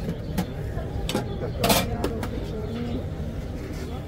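A few brief clicks and scrapes of a metal ice-cream scoop against the metal ice-cream canisters, over a steady background of outdoor noise and faint voices.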